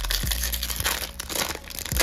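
Foil wrapper of a Topps baseball-card pack crinkling and tearing as it is pulled open by hand, a dense run of crackles.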